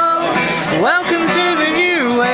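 A woman singing live while strumming her acoustic guitar, amplified through a small PA; she holds long notes and swoops up in pitch into a new held note about a second in.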